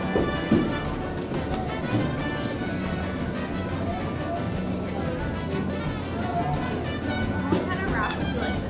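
Background music playing steadily.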